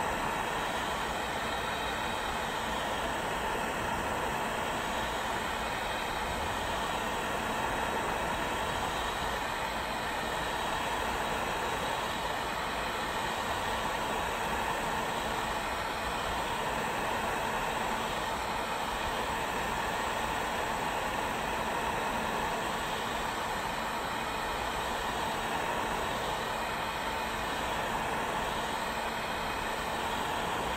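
Heat gun running steadily, its fan and hot air making a constant rushing noise that holds one level, as it blows onto a titanium bar to heat it.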